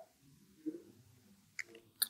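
Mostly quiet room tone, broken by a soft, brief noise about a third of the way in and a short faint click near the end.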